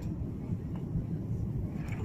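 Airbus A330's engines and airflow heard inside the cabin as a steady low rumble while the airliner flares just above the runway on landing.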